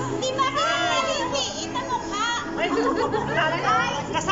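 A lively group of women's voices talking over one another, laughing and singing along, with music underneath.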